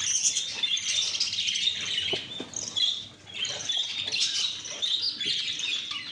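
A flock of budgerigars chattering and chirping continuously, with a short lull about three seconds in and a few faint clicks.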